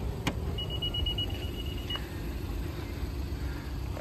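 A quick run of short, high electronic beeps lasting about a second and a half, with a click just before it and another as it stops, over a steady low rumble.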